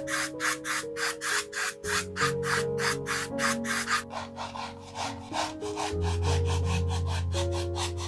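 Flat paintbrush stroking wet acrylic paint back and forth across a wood slice, about three strokes a second, then quicker and softer strokes in the second half, over soft background music with sustained chords.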